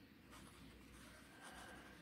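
Faint scratching of a felt-tip marker pen writing on paper.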